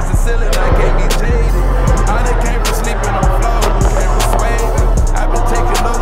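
Hip-hop backing track in an instrumental stretch without vocals: a heavy, booming bass line under sharp, crisp high percussion hits.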